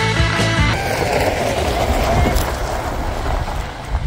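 Rock background music cuts off suddenly under a second in. Then a lifted 2003 Honda Element drives away over gravel, its tyres crunching in a rough, even noise that eases slightly near the end.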